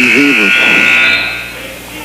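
Gymnasium scoreboard horn sounding once, a buzzy tone about a second long, in a dead ball as a substitute checks into the game.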